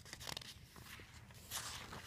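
Paper page of a picture book being turned: a faint rustle, with a soft swish about one and a half seconds in.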